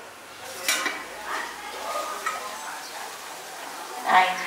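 Kitchenware being handled at a stove: a sharp metallic clink about three-quarters of a second in, followed by lighter knocks and handling noises, with faint voices in the background.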